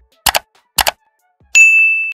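Subscribe-button animation sound effects: two mouse clicks, each a quick double tick, then a bright bell ding about a second and a half in that rings on.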